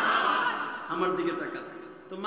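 A man's voice amplified through a microphone, a drawn-out vocalization that fades away toward the end.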